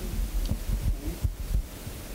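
Handling noise from a handheld microphone as it is passed between people: a series of low thumps and knocks over a low rumble.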